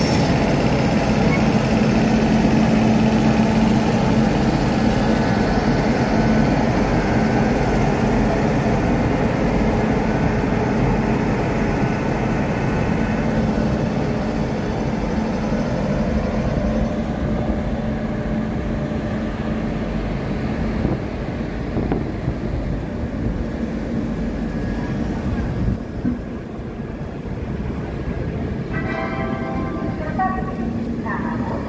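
An Indian Railways WAP-7 electric locomotive and its coaches rolling past close by: a steady rumble of wheels on rail, with a low hum from the locomotive that is loudest in the first few seconds. The sound eases off as the coaches go by.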